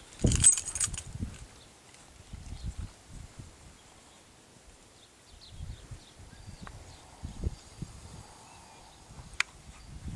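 Nylon cord being handled while a bowline knot is tied in hand: a brief loud rustle in the first second, then faint rustling with a few soft knocks and two small clicks near the end.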